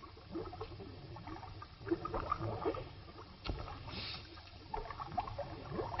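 Faint cartoon sound effects: scattered short squeaks and bubbly gurgles, with a sharper click about three and a half seconds in.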